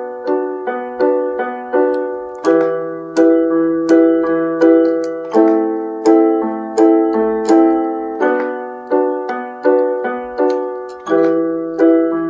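Electronic keyboard on a piano voice playing an E minor chord progression. Each chord is struck in a steady pulse, a little under two strikes a second, and the chord changes about every three seconds.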